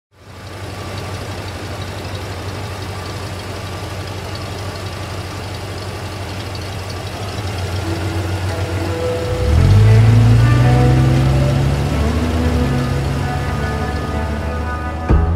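Pickup truck engine idling steadily, then revving up about nine seconds in as the truck pulls away and drives on.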